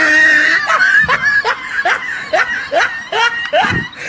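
A person laughing hard: a high held squeal at the start, then a run of short falling 'ha' bursts, about two a second.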